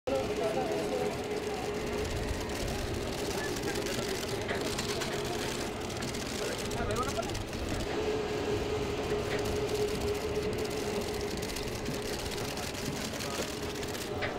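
Indistinct voices of people over a steady mechanical hum with a constant low tone.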